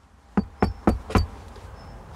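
A hand knocking four times in quick, even succession on a steel door.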